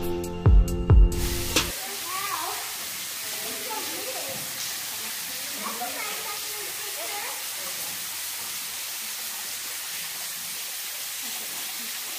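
Background music with a piano-like tune and a few beats for the first couple of seconds, then it cuts to a steady hiss of water trickling and splashing down a cave's rock wall, with faint voices under it.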